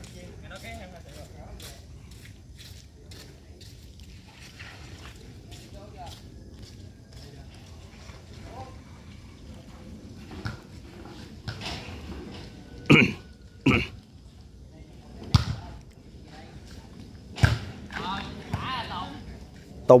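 A volleyball being kicked back and forth on a wet, muddy court: a string of sharp thuds, with four louder ones in the second half, over faint distant voices.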